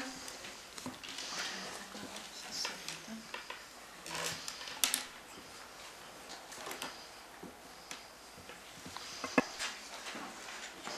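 Hushed meeting room during a vote: scattered small clicks and knocks from people handling things at a table, with faint murmuring. A couple of sharper clicks come about five seconds in and near the end.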